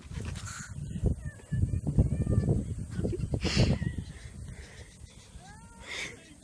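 A person laughing, over rumbling handling noise and knocks from a camera held against the body, with a few faint short calls that bend in pitch.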